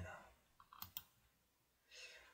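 Near silence broken by two faint, sharp clicks close together about a second in, the click of advancing a presentation to the next slide.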